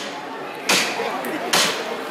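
Two sharp knocks of the martillo, the knocker hammer on the front of a Holy Week processional float, a little under a second apart, over crowd chatter.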